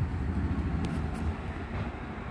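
Steady low background rumble, with a couple of faint clicks about a second in.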